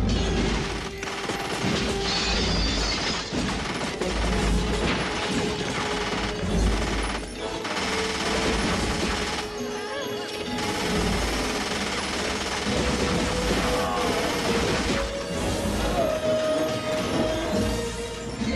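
Film soundtrack: action music under a dense run of crashes and impacts, starting suddenly.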